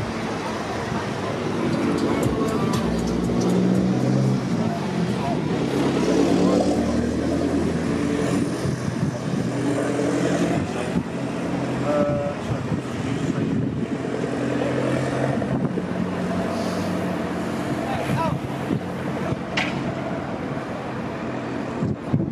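Cars running and passing on the street, with some indistinct talking mixed in.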